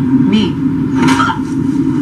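Television episode soundtrack playing back: a steady low drone, with brief snatches of voices about half a second and a second in.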